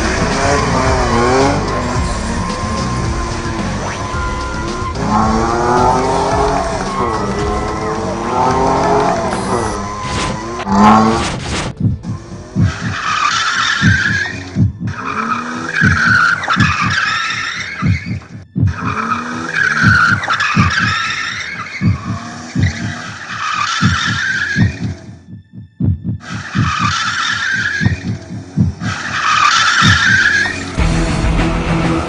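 Car engines revving up and down with tyre squeal as two sedans drift, for roughly the first eleven seconds. After that, music with a steady beat takes over.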